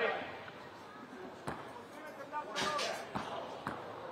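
A basketball bounced a few times on the court in a free-throw routine, each bounce a sharp single knock, spaced unevenly, with a murmur of crowd voices behind.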